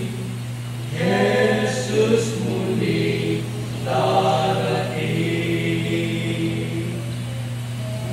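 Male vocal trio singing a hymn in harmony into a microphone. The phrases close on long held notes that fade out near the end, over a steady low hum.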